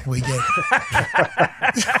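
Men talking, with a short laugh near the end.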